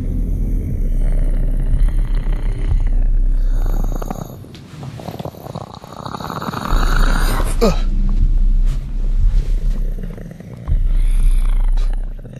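Low, ominous rumbling drone from a horror-style sound bed. About halfway through, a noisy swell rises in pitch and breaks off, followed by a short falling sweep.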